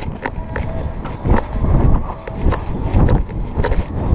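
A horse's hoofbeats on grass turf, a series of heavy thuds about every half second, heard close from the rider's head-mounted camera as it jolts with the stride.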